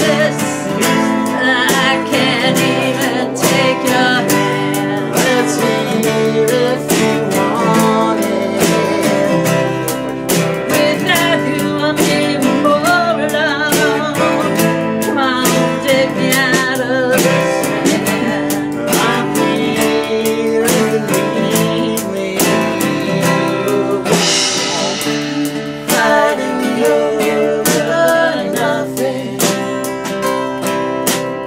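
Live acoustic band: two acoustic guitars strummed over a drum kit with cymbals, keeping a steady beat, with a voice singing at times. A cymbal wash stands out near the end.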